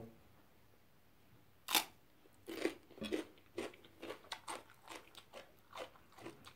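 Close-up mouth sounds of someone chewing a mouthful of steamed squid. There is one sharp click a little under two seconds in, then soft, irregular chewing noises a few times a second.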